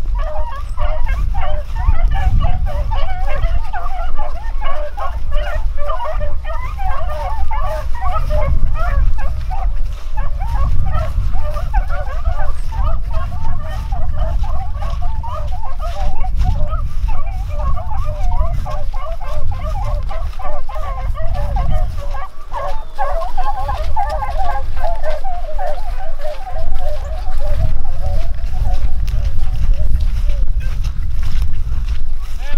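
A pack of beagles baying in full cry, many hound voices overlapping continuously, as they run a rabbit's track. The calls thin out near the end, over a low rumble of wind on the microphone.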